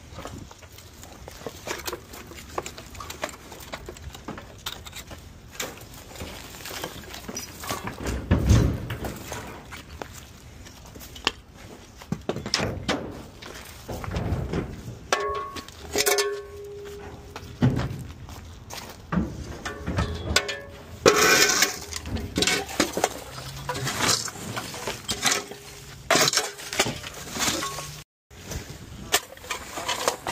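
Junk and debris being shoveled up and tossed into a dump trailer: irregular clatters, clinks and thuds of broken wood, glass and trash, with scrapes of a shovel, the heaviest crashes about eight seconds in and again about twenty-one seconds in.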